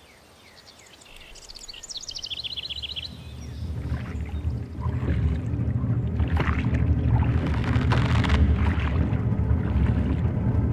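A low rumbling drone swells up over the first half and blends with the rush of fast-flowing river water. A short high trill sounds in the first few seconds.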